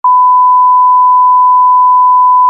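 Loud, unbroken test-pattern tone: the single steady pitch of the standard 1 kHz reference tone that goes with television colour bars.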